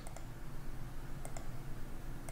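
Computer mouse clicking twice, about a second apart, each click a quick press-and-release pair, while circles are placed in a CAD sketch, over a low steady hum.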